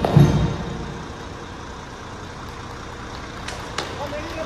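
A military band's last drum beat just after the start, ringing out, then the steady low rumble of city street traffic. Two sharp clicks come near the end.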